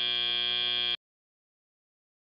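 Arena end-of-match buzzer sounding a steady, harsh, buzzy tone that cuts off suddenly about a second in, marking the end of the match.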